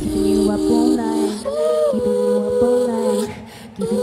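Live pop performance in a stripped-down passage: the drums drop out, leaving held keyboard chords under a sung vocal line. The music dips quieter shortly before the end, then comes back.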